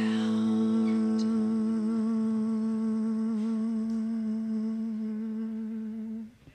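Live music closing a song: a single held note with a slight waver, slowly fading, with a second, higher note dropping out about two seconds in.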